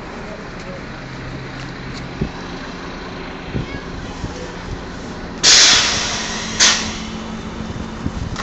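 Double-decker bus idling at a stop. About five and a half seconds in comes a loud hiss of compressed air that fades over a second, then a second, shorter hiss a second later: the bus's pneumatic system venting air.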